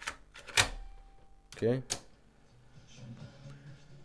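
A cassette pushed into a car cassette radio deck: the loading mechanism takes it in with a sharp click about half a second in, followed by a brief faint whine, and another click a little later.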